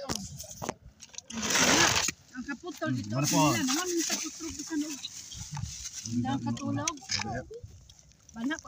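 People talking close to the microphone, with a short rush of noise about a second and a half in.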